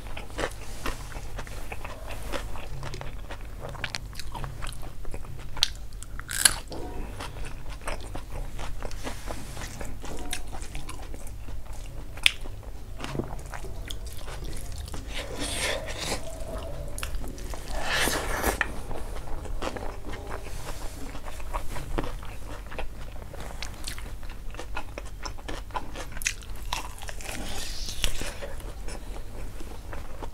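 Close-miked eating: a man chewing mouthfuls of rice taken by hand, with irregular clicks and a few louder crunches scattered through.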